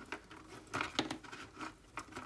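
Fingernails picking and scratching at a small roll of skinny washi tape to find its loose end: a few faint crinkly clicks and scrapes, the loudest about a second in.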